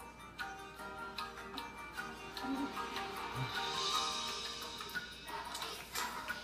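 Music from a children's TV show playing on a television.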